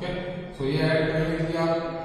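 A man's voice drawn out in a long, steady, chant-like tone, starting about half a second in and held with hardly a break.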